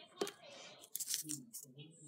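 Small paper booklets being handled and opened by hand: soft paper rustling with a few light clicks and taps.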